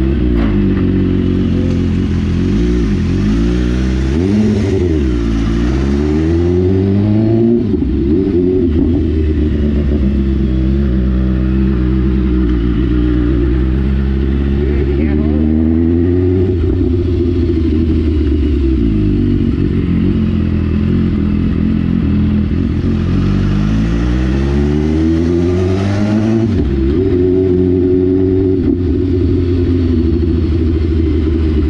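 BMW S1000RR inline-four motorcycle engine running under way at low road speed. The revs rise and fall a few times as the rider opens and closes the throttle.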